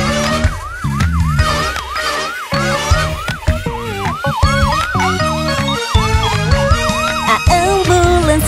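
Ambulance siren sound effect in quick, repeating rising sweeps, about two and a half a second, over bouncy children's-song music. The siren stops shortly before the end while the music carries on.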